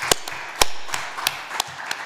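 A small group applauding, with a few sharp individual hand claps standing out over the softer clapping.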